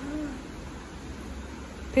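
A person's voice making a short, soft, low hum in the first half-second, rising then falling in pitch, then quiet room tone.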